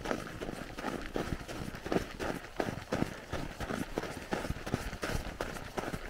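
Footsteps crunching on packed snow at a jogging pace: a quick, even rhythm of two to three steps a second.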